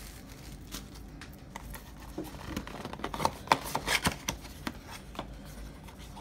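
Soft rustling of plastic wrap and cardboard with scattered small clicks as a card box is opened and a hard plastic card case is handled.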